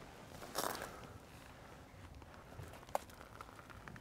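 Faint rustling and crunching of dry grass and leaf litter as a person steps and moves through it, with a short rush of noise about half a second in. A single sharp click comes about three seconds in.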